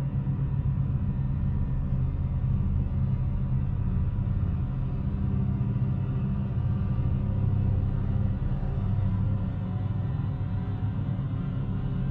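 A low, steady drone in the production's music, with faint sustained tones held above it.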